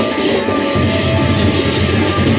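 Gendang beleq ensemble of Lombok playing: dense clashing of ceng-ceng cymbals over sustained gong tones, with the heavy low beat of the big drums coming in strongly about three-quarters of a second in.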